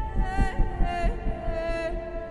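Film soundtrack: slow orchestral strings holding long, slightly wavering notes that step down in pitch about a second in. Underneath, a low, roughly rhythmic thudding of helicopter rotors fades away.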